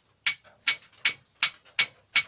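A steady run of sharp, evenly spaced ticks, nearly three a second.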